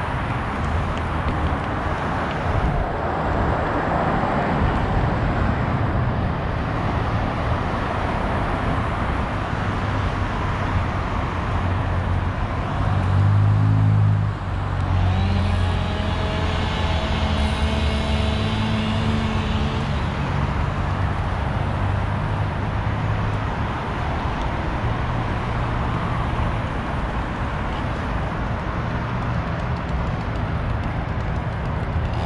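City road traffic passing steadily, with a louder vehicle going by close about halfway through, its engine giving a steady pitched hum for several seconds.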